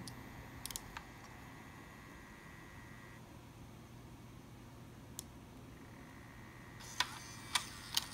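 Faint steady hum from an opened Mac mini while its power button is held in, with a thin high whine that stops about three seconds in. A few light clicks, sharper near the end.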